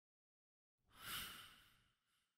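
A faint, airy whoosh effect for a logo reveal, swelling in about a second in and fading away over the next second.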